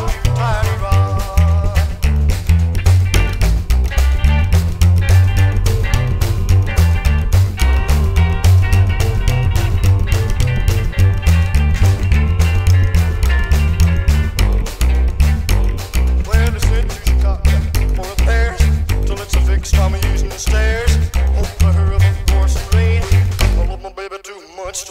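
Rockabilly music: an Oriente HO-38 upright bass is played slap style, its walking notes with a clicking attack, under a recording with a lead guitar line. The music stops suddenly just before the end.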